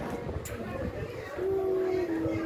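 A voice singing one long held note, starting about one and a half seconds in and stepping a little lower near the end; before it, quiet room noise with a single click.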